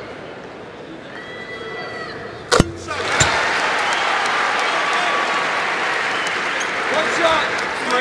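Basketball arena crowd: low murmur, then one sharp thud about two and a half seconds in, after which the crowd cheers and applauds steadily to the end.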